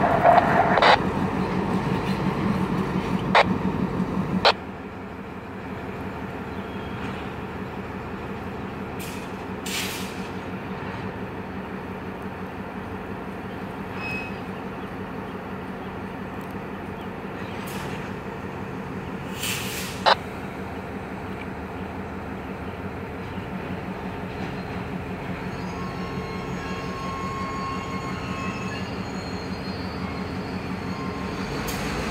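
EMD GP38-2 diesel-electric locomotive with its 16-cylinder engine running close by, with a couple of sharp knocks. After a sudden drop about four seconds in, it is heard farther off as a steady rumble, with a single knock and faint wheel squeal near the end as it moves along the yard track.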